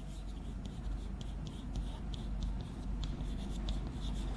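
Chalk writing on a blackboard: an irregular run of short taps and scratches as Chinese characters are written stroke by stroke.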